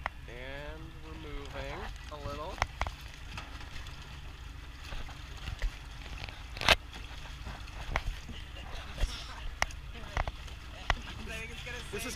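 Lake water splashing and rushing against the plastic hull of a pedal boat under tow, with scattered sharp slaps of water on the hull, the strongest about seven seconds in, over a steady low rumble.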